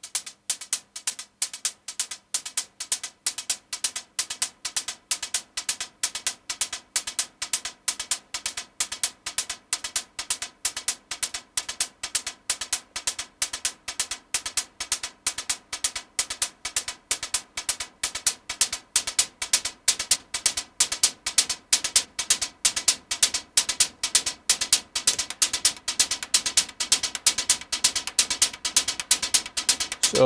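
Synthesized techno hi-hat loop from an analog modular synthesizer: short, sharp hits with most of their energy high up, about four a second, run through a delay synced to the sequencer that adds overlapping echoes. About halfway through, the hits grow denser and louder.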